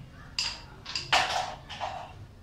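Carrom striker and pieces clicking and knocking on the board: about four sharp clacks in under two seconds, the loudest just past the middle.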